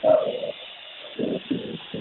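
A man's voice over a telephone line making short hesitation sounds before answering: a brief hum near the start, then a couple of low, wordless sounds about halfway through.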